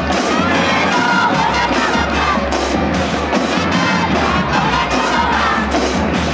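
A high-school marching band plays, brass and snare drums, while an audience cheers and shouts over the music.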